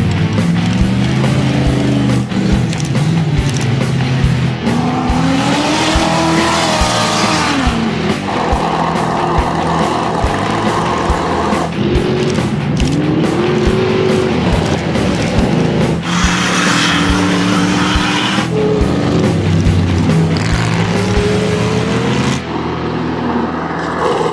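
Ultra4 off-road race car engines revving and accelerating hard on a dirt track, the pitch rising and falling through the gears, over background music with a steady beat.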